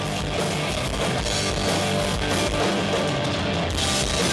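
Rock band playing live, an instrumental passage of two electric guitars, electric bass and drum kit with cymbals, loud and steady.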